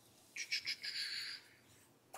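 A brief rustling scrape of paper being handled at the desk, lasting about a second, with a thin squeaky edge.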